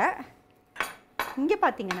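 A metal spoon clinks once against a bowl, a single sharp clink about a second in.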